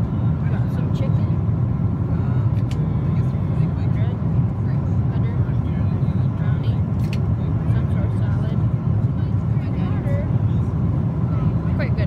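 Steady low rumble of a jet airliner's cabin in flight, with faint, indistinct voices and a few light clicks over it.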